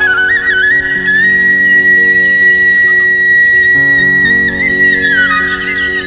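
Flute playing a melodic introduction over sustained chords: it climbs to a long held high note about a second in, holds it for several seconds, then dips and rises again near the end.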